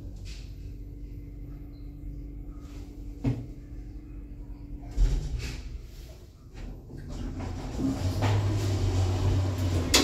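A Mitsubishi hydraulic elevator runs with a steady low hum. There is a knock about three seconds in and a sharp thump about five seconds in as the car comes to a stop. Then a louder hum and sliding rumble follow as the car doors open.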